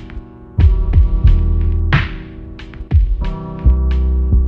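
Instrumental hip-hop beat with no vocals: deep booming bass notes held under a sustained synth chord, punctuated by drum hits, with one snare-like crack about two seconds in and light high ticks.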